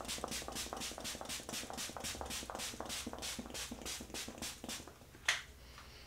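Pump-action facial setting spray (Anastasia Beverly Hills Dewy Set) misted onto the face in rapid repeated spritzes, about four or five a second, stopping about five seconds in. A single louder puff follows soon after.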